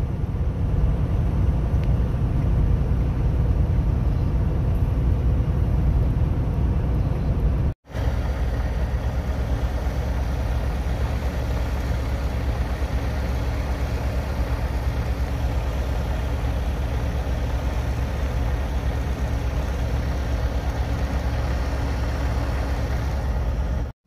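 Steady low rumble of a semi-truck's diesel engine and road noise heard inside the cab. The sound cuts out for an instant about eight seconds in, then a similar steady rumble goes on.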